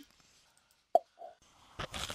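A single short pop about a second in, followed by a fainter, softer one; otherwise near silence.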